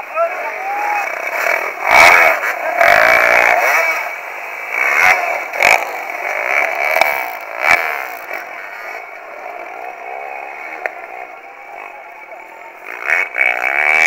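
Off-road enduro motorcycle engines revving and running over the voices of onlookers, with several loud low thumps hitting the microphone.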